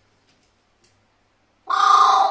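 A pet carrion crow gives one loud caw, starting near the end.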